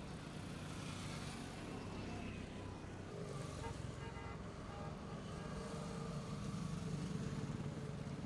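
Highway traffic running past the roadside, a steady hum of engines and tyres that grows a little louder toward the end.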